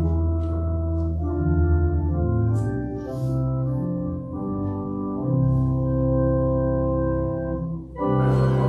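Organ playing a hymn in held chords that change every second or so, with a brief break in the sound just before the end.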